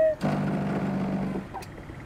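Motor scooter's small engine running steadily as it pulls up, its hum dropping away about one and a half seconds in as the scooter comes to a stop.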